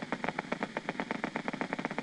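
Needle EMG machine's loudspeaker giving out a rapid, even train of clicks: the motor unit potentials picked up by a concentric needle electrode in the right triceps brachii, firing repeatedly.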